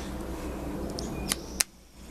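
Steady background noise with two sharp clicks about a second and a half in, after which the sound drops out abruptly.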